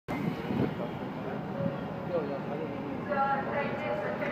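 Indistinct voices of people over steady background noise, with a brief held, higher-pitched call about three seconds in.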